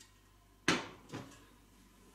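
A stainless steel pot of liquid set down on a glass cooktop: a sharp knock about two-thirds of a second in, then a lighter knock half a second later.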